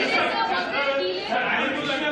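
Several voices talking over one another in a large room: reporters' chatter at a press briefing.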